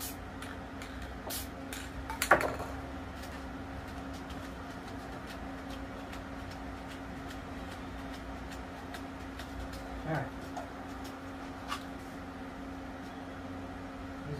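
Soft scattered taps of paint being dabbed by hand onto a stencilled spray-paint board, with one sharper knock a couple of seconds in, over a steady low hum.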